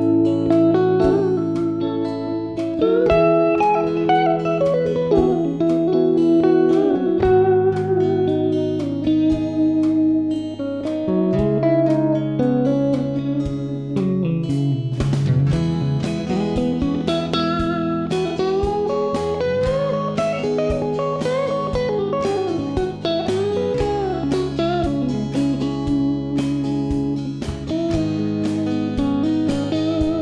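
Electric guitar lead line with bent, gliding notes over sustained rhythm guitar chords and a steady drum beat.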